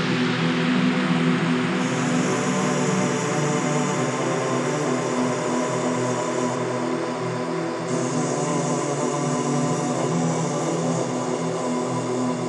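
Opening of a progressive Goa trance track: sustained electronic synthesizer drone chords under a hissing noise wash, with no drums or bass beat yet.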